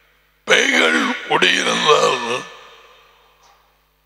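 A man speaking briefly through a headset microphone, a short phrase of about two seconds, its echo dying away into silence.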